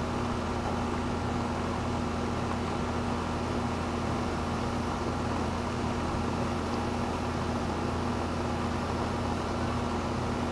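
Air-conditioning unit running with a steady, unchanging drone and a constant low hum.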